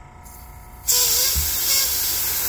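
Master Airbrush dual-action airbrush spraying paint through a stencil, a steady loud hiss that starts about a second in.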